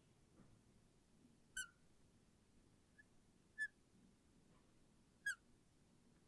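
Marker tip squeaking on a glass lightboard while letters are written: three short, high squeaks about two seconds apart, with a fainter one between, over near silence.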